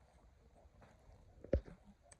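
Quiet outdoor background with one short, loud thump about a second and a half in.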